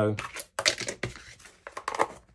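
A short puff of breath blown across a sheet of silver mirror paper to clear dust from it, followed near the end by a few light clicks as a plastic lid is pressed onto a small tub.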